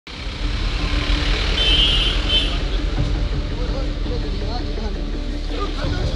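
A utility van's engine running as the vehicle drives off, a steady low rumble, with two brief high-pitched tones about two seconds in and a crowd's voices rising toward the end.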